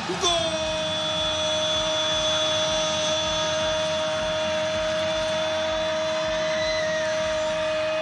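A TV football commentator's goal call: one long "gooool" shout held on a single steady pitch for nearly eight seconds.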